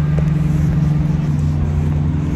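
A motor vehicle's engine running close by on a street: a loud, steady low hum under general traffic noise.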